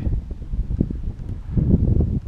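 Wind buffeting the microphone, a rough low rumble that rises and falls.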